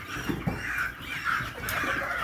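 A flock of brown laying hens clucking, many birds calling over one another at once.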